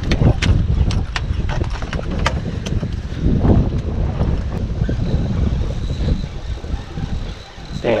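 Wind buffeting the microphone in a steady low rumble on a choppy open boat, with scattered sharp clicks and knocks.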